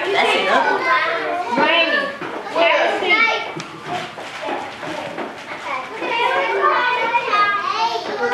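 A group of young children talking and calling out over one another in a busy jumble of high voices, easing off a little around the middle.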